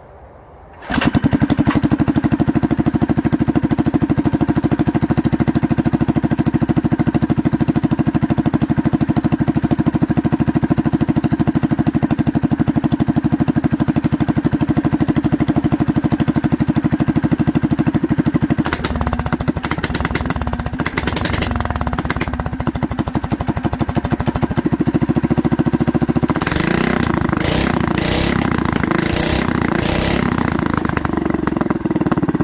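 Doodlebug minibike's Predator 212 single-cylinder four-stroke engine catching about a second in on a cold start with the choke on, then running steadily at a fast idle. Its note shifts about two-thirds of the way through and again near the end.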